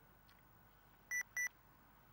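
Two short electronic beeps at the same pitch, one right after the other about a second in, over a faint steady background hum.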